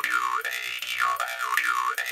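A metal jaw harp (mouth harp) is plucked steadily over its buzzing drone. The player's mouth shapes vowels (A-E-I-O-U-Y), so a bright overtone swoops down and back up several times in a wah-like pattern.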